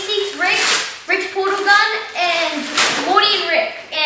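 Speech only: children talking.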